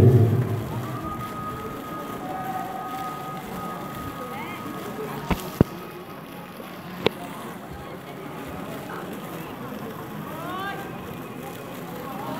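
Outdoor event ambience: a steady background noise with faint distant voices. Three sharp clicks or knocks stand out around the middle.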